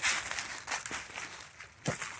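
Footsteps through dry fallen leaves, a few irregular rustling steps.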